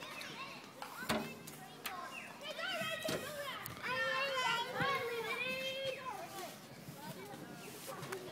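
Children playing: high-pitched children's voices calling and chattering, busiest from about two and a half to six seconds in, with a few sharp knocks in the first three seconds.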